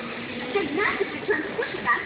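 High-pitched voices talking, from a store display television's speaker playing a children's video.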